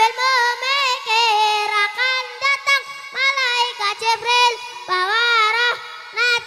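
A young boy singing an Arabic devotional chant into a microphone in a high voice, holding long, ornamented notes that waver up and down, in short phrases with brief breaths between them.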